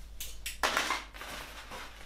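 Plastic items being handled and moved about in a clear plastic drawer. A brief rustle starts about half a second in and fades by the middle.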